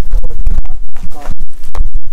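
Wind buffeting the microphone: a loud, distorted low rumble broken by many brief crackling dropouts.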